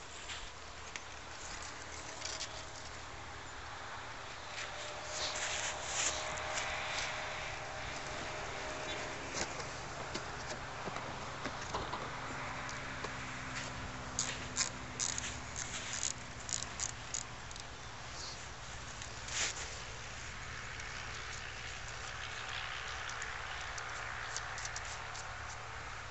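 Quiet pebble-beach ambience: a steady hiss of calm sea, with scattered small clicks and crunches from someone moving about on the shingle, clustered about halfway through.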